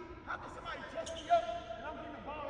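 Basketball bouncing on a hardwood court and sneakers squeaking, with a sharp loudest bounce a little past the middle.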